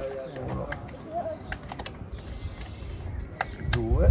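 Honda Africa Twin drive chain and rear sprocket clicking irregularly as the rear wheel is turned slowly by hand, checking the freshly tensioned chain.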